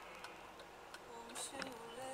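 Car turn-signal indicator ticking faintly, about three clicks in two seconds, over quiet music with singing from the car's radio.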